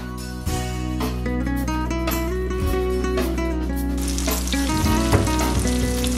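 Breaded razor clams sizzling in hot oil in an electric skillet. The hiss of frying swells up about four seconds in, over steady background music.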